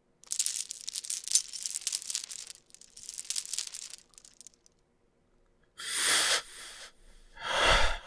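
Two bursts of bright, jingling metallic rattle, each about two seconds long, followed near the end by two breathy rushes of sound, the second louder and deeper.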